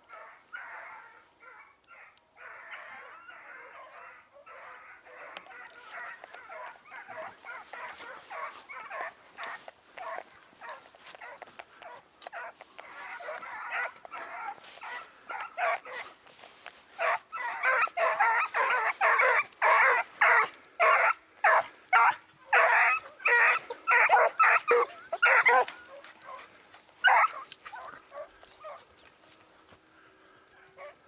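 A pack of hunting hounds baying in chorus, a rapid overlapping run of cries. It grows louder past the middle and dies away near the end.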